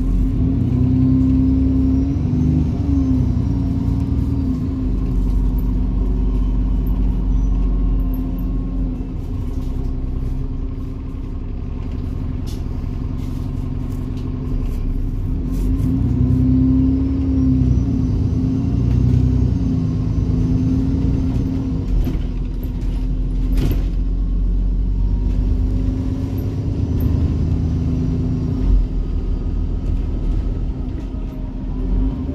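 Alexander Dennis Enviro400 double-decker bus heard from inside the passenger saloon: the diesel engine drawing away twice, its pitch rising and falling as it picks up speed, with a faint high whine rising and falling with it. A few rattles from the bodywork near the end.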